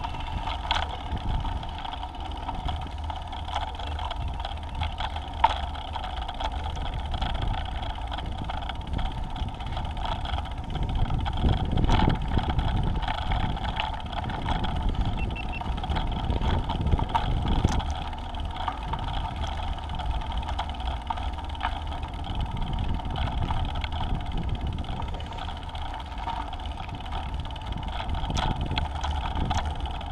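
Space Scooter rolling along pavement: a steady rumble from its wheels with wind on the microphone and scattered small clicks and rattles. It grows louder around a third of the way in and again a little past halfway.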